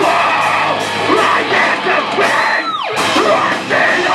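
Metal band playing live: distorted electric guitars and drums under screamed vocals. About two and a half seconds in, a high note slides steeply down in pitch, and the band briefly drops out before coming back in.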